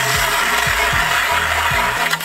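Hand-cranked ice auger cutting through pond ice: a steady, loud grinding rasp that stops abruptly at the end. Background music with a low beat runs underneath.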